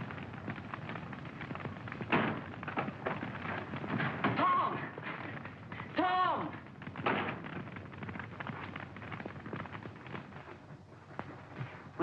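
Open fire crackling and popping in a hearth, with a few louder pops. A short voice sound is heard twice, about four and a half and six seconds in.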